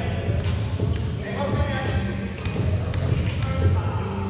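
Indistinct voices of players and onlookers echoing in an indoor gym, with a basketball bouncing on the court floor as the shooter gets ready for a free throw.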